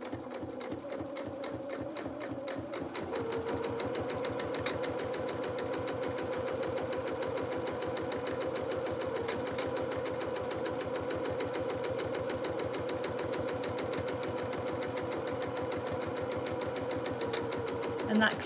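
Electric domestic sewing machine stitching along the edge of a narrow cotton fabric belt: a fast, even rattle of needle strokes over a steady motor hum. It picks up speed about three seconds in and then runs steadily.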